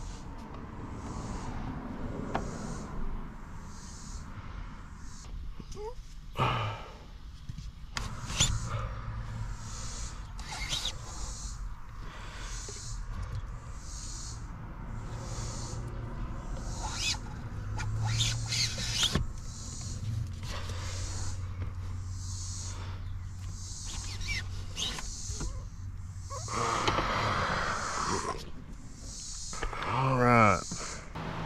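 Hard plastic parts of a car's under-dash HVAC housing knocking, clicking and scraping as the evaporator core is wiggled out of the tight space by hand, with a low steady hum underneath for much of the time.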